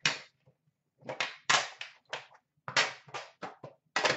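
Hands handling a metal Upper Deck The Cup card-box tin: a string of short scrapes and knocks from the tin and its lid being gripped, lifted and opened, about half a dozen with short gaps between them.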